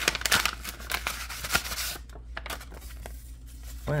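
A paper envelope is torn and rustled open, with dense crackling for about two seconds. Then lighter paper handling follows as the cards are slid out.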